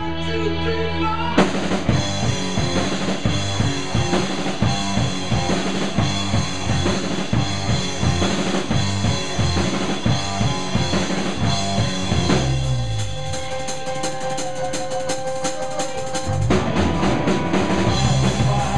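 Live rock band playing an instrumental passage. A drum kit comes in about a second in with a fast, busy beat, then drops out for a few seconds after about two-thirds of the way through, leaving held notes. The full band comes back in near the end.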